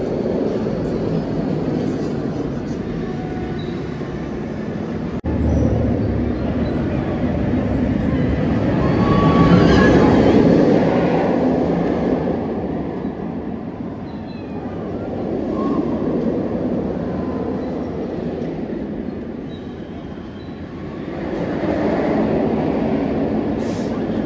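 Steel inverted roller coaster train rumbling along its track overhead, a continuous roar that swells as the train passes, loudest about ten seconds in and again near the end.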